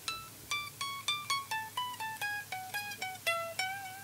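LTD Viper-200FM electric guitar playing a fast run of single picked notes, about five a second, that steps downward in pitch. It ends on a held note with slight vibrato.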